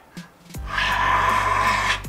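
Background music comes in about half a second in, with a man's long, breathy sigh over it.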